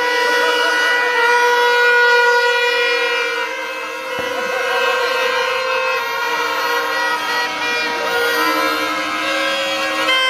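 Several horn-like tones held for a second or more each, overlapping at different pitches and starting and stopping at different times.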